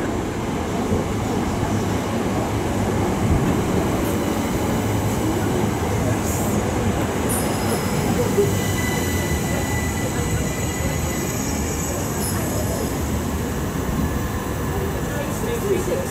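Class 375 Electrostar electric multiple unit arriving at a station platform and slowing down: a steady rumble of wheels on rail, with thin high squeals from the wheels and brakes.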